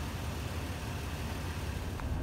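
Toyota pickup truck engine idling steadily, its sound sitting low and even.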